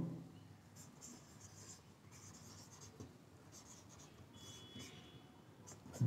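Faint scratching of a marker writing on a whiteboard in a series of short strokes, with a brief thin squeak a little after four seconds in.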